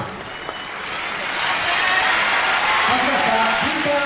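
Arena crowd applauding the announced winner of a kickboxing bout. The applause dips at first and swells from about a second in.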